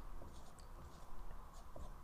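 Marker pen drawing on a whiteboard: faint, short scratchy strokes as small circles and lines are drawn.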